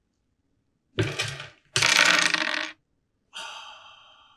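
Two breathy bursts, a short sharp breath and then a longer, louder exhale, are followed about three seconds in by a small metallic chime that rings and slowly fades.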